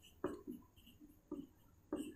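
Marker pen writing on a whiteboard: four faint, short taps and strokes as the pen touches down.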